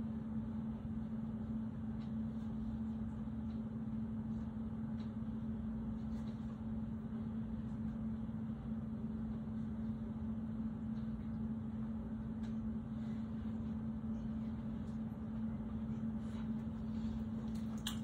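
Steady low hum with a constant droning tone over a low rumble, the room's background noise, with a few faint soft ticks scattered through it.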